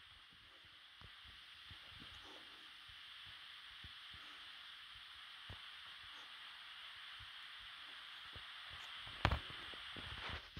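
Faint steady outdoor hiss with scattered light taps and scuffs, and one sharper knock near the end.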